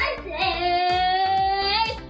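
A child singing one long held note that rises very slightly in pitch, over background children's music with a steady beat.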